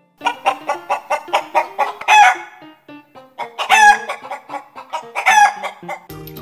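Hen cackling: runs of quick clucks that build to a loud, drawn-out call, three times over.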